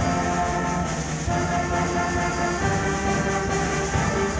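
Youth concert band of brass and woodwinds playing held chords, which change a couple of times.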